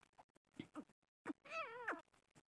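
Grey francolin giving a few short soft calls, then one longer call near the end whose pitch dips and rises.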